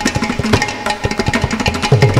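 Mridangam and ghatam playing a fast, dense percussion passage of rapid hand strokes, with a deep bass stroke that slides down in pitch near the end.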